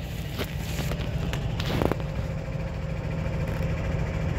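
Tractor engine idling, a steady low hum, with a few light knocks and scuffs of handling close by.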